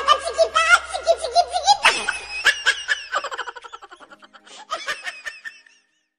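Laughter, loud at first and tailing off, with a last short burst near the end.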